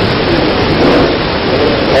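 Steady, loud hiss-like background noise with faint traces of a man's voice under it.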